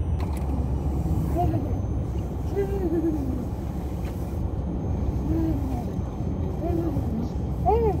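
Steady low rumble of a car driving, heard from inside the cabin, with brief snatches of voices over it.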